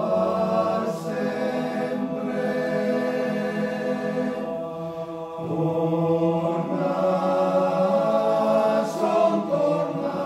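A choir singing sustained chords in Venetian dialect, with a brief breath between phrases about five seconds in, after which the singing swells louder.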